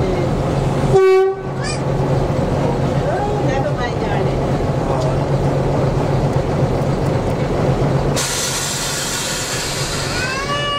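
A short blast of a small diesel shunting locomotive's horn about a second in, over the steady low drone of its engine heard from the cab. Near the end a steady hiss sets in.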